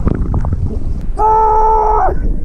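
Water sloshing against a camera held at the surface, then about a second in a loud, held yell on one steady pitch, lasting nearly a second, from someone leaping off the dock.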